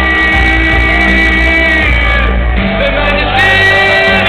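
Live band music played loud through a venue's sound system, recorded from within the crowd: two long held high notes ring out over a steady heavy bass, the second near the end.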